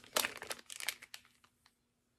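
Clear plastic clamshell packaging of a wax melt crinkling and crackling as it is handled. The crackling dies away about a second and a half in.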